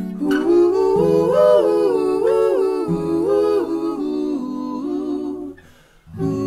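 Layered a cappella voices singing a wordless melody that steps up and down over held harmony notes and a low sung bass line. The singing dies away shortly before the end.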